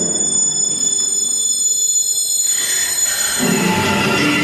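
Live contemporary chamber music for bass clarinet and accordion: a cluster of high, steady, piercing tones is held for about three seconds and fades out. Low sustained notes enter near the end.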